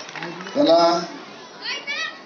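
Speech: a few spoken syllables, then a short, high-pitched voice rising in pitch near the end.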